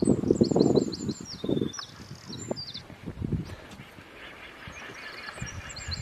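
A small bird chirping in quick runs of short, high notes, once early on and again near the end. Under it, a louder low rumbling noise in the first couple of seconds fades away.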